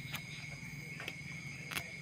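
Night insects, crickets among them, singing steadily, with a low buzzing hum underneath and a few faint clicks.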